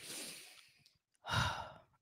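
A person's breathing close to a microphone: a soft sigh, then a second, louder breath just over a second later.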